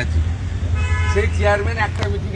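A vehicle horn sounds once, steady, for about half a second a little under a second in, over a constant low street rumble, with a man talking right after it.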